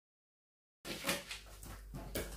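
Dead silence for almost a second, then scissors cutting through stiff brown pattern paper in a few snips.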